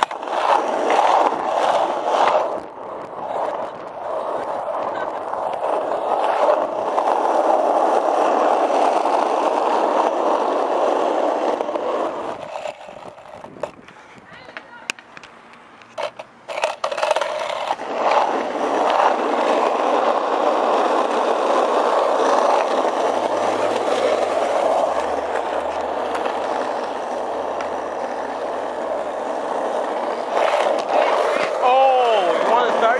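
Skateboard wheels rolling on asphalt: a steady rumble that drops away for a few seconds about halfway, then picks up again after a few knocks.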